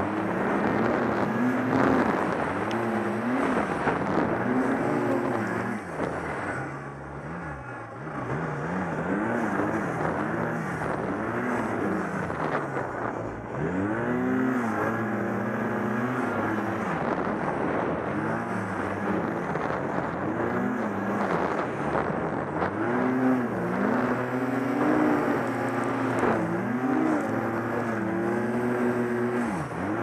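1100T snowmobile engine revving up and down over and over as the throttle is worked under load in deep snow, with a quieter stretch about seven seconds in where it eases off.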